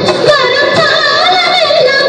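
Indian song with a high female voice singing a sliding, wavering melody over instrumental accompaniment, played loud as dance music.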